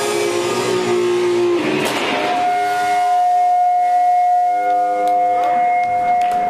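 Electric guitars ringing out on a held chord as the song ends. From about two seconds in, one steady high tone from guitar amplifier feedback holds loudly over it.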